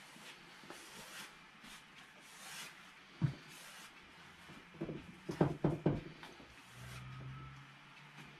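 Bristle brush stroking and dabbing oil paint onto a stretched canvas on an easel: faint scraping, one sharp tap about three seconds in, and a quick run of louder taps about five to six seconds in.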